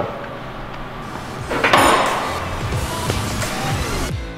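Metalworking noise on a rusted steel door panel, clattering and scraping, with a louder burst of harsh scraping about one and a half seconds in, under background music.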